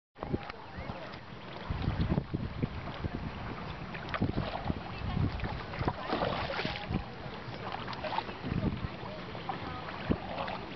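Wind on the microphone and water sounds from a small boat being paddled on a lake, with occasional sharp knocks.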